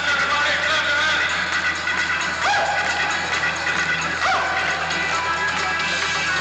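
Live band music played on stage, dense and continuous, with two notes that slide up and then hold, about two and a half and four seconds in.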